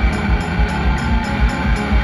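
Live band music played loud over a PA: electric guitar over a steady, quick drum beat, between sung lines.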